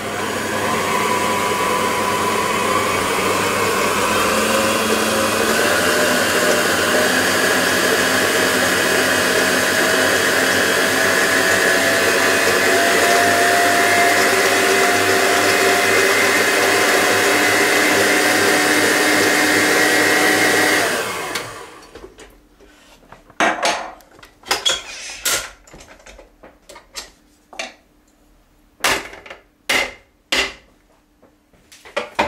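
Electric mixer running steadily as it beats the cheesecake filling while melted white chocolate is added, its whine creeping slightly higher in pitch. It switches off about 21 seconds in, and a few short knocks and clinks of utensil and bowl follow.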